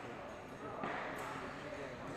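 Indistinct chatter of many people echoing in a large sports hall, with a few dull thuds of footsteps on the hall floor as a fencer steps in.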